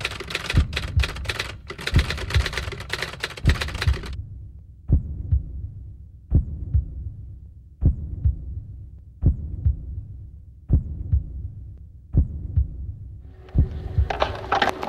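A heartbeat-like sound effect: slow, deep thumps about one every second and a half, each with a short click on top and fading between beats. For the first four seconds the thumps sit under dense, rapid clicking.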